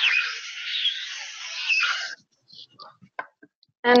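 Permanent marker drawn over paper in a spiral: a continuous scratchy squeaking for about two seconds, then a few faint taps.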